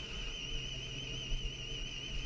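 A steady electronic tone, high and with a fast slight warble, over a low hum: a sci-fi equipment sound effect.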